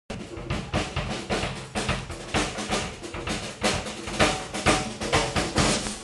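Live ensemble music dominated by drums and percussion, struck in a quick, dense run of beats, with pitched instruments underneath.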